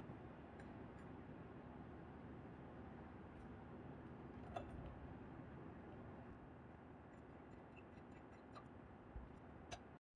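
Near silence: faint room tone with a few faint, sparse light clicks from a helicoil insertion tool and a steel thread insert being worked into an aluminium engine mount.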